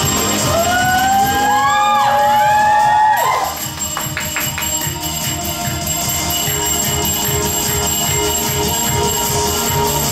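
Belly dance music with a steady drum beat. Over the first three seconds several pitched lines slide upward and bend before breaking off, and a few sharp strikes of finger cymbals (zills) follow soon after.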